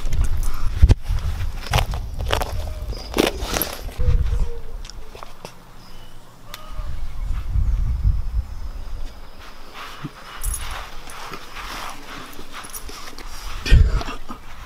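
Low rumbling from a handheld camera's microphone being handled and moved about outdoors, with scattered knocks and clicks and a sharp knock near the end.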